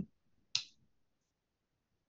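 A single short, sharp click about half a second in.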